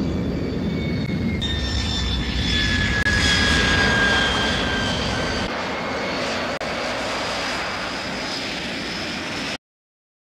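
Jet noise from a Shenyang F-6 (Chinese-built MiG-19) fighter's twin turbojets as it lands and rolls out. It is a loud, steady rush with high whines that glide slowly down in pitch. The sound changes abruptly twice and cuts off suddenly near the end.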